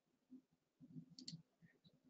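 Near silence with faint room noise and a pair of soft, short clicks a little over a second in.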